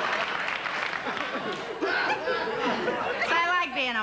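Studio audience laughing and applauding, dying away over about three seconds. A woman's voice starts speaking near the end.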